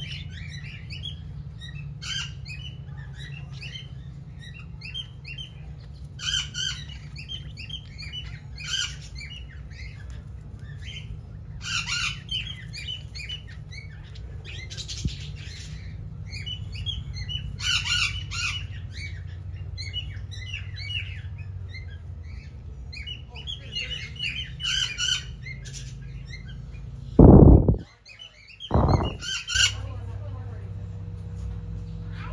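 A flock of birds chirping and squawking, many calls at once in bursts, over a steady low hum. Near the end, two loud bumps.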